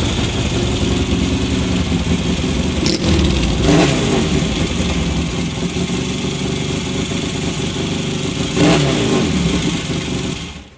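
Two Yamaha 650 parallel-twin motorcycles, a 1974 TX650A and a 1979 XS650 flat-tracker enlarged to 750cc, run at low revs as they ride slowly in and come to a stop. There are two short throttle blips, about four seconds in and near nine seconds.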